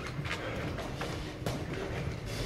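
Boxers' footwork on a wooden hall floor: scattered shuffling steps and light taps, with one sharper knock about one and a half seconds in.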